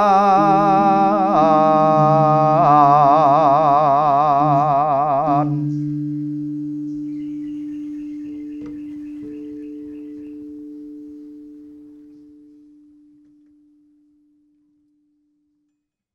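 Javanese tembang macapat sung in a slow, melismatic style, ending on a long held note with a wide vibrato about five seconds in. A single steady tone rings on after the voice stops and slowly fades out.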